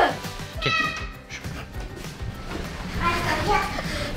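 Laughter, then a short high-pitched squeal about a second in and faint voices later, over background music.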